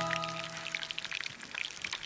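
Breaded pork cutlets deep-frying in a pan of hot oil: the oil sizzles with an irregular crackle of small pops. Background music fades out in the first half second.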